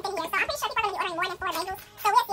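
A person's voice runs throughout, its pitch wavering, with no words clear enough to transcribe.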